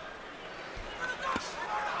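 Gloved punches thudding as they land in a boxing ring, the sharpest about one and a half seconds in, over the noise of an arena crowd.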